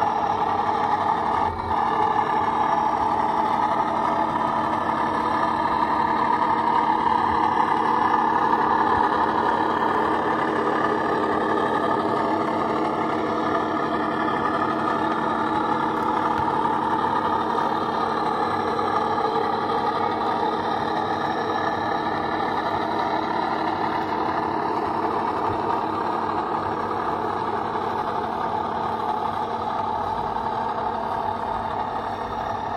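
Sound decoder in a Minerva O gauge Class 14 'Teddy Bear' diesel model playing a steady diesel engine running sound through the model's small speaker, its pitch wavering gently as the locomotive moves its train.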